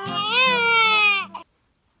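A baby's wail, one long cry that rises and then falls in pitch, over the last held chord of an intro jingle; both cut off about one and a half seconds in.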